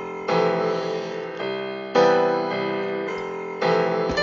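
Background piano music: slow, sustained chords, with a new chord struck about every one and a half to two seconds.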